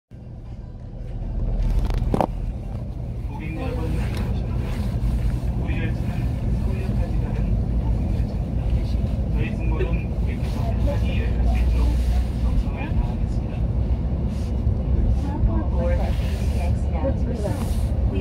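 Steady low rumble inside the cabin of a KTX-Cheongryong high-speed train as it pulls out of the station, building over the first couple of seconds, with passengers' voices over it.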